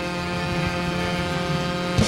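Live show band holding one long sustained chord, ending with a sharp final hit.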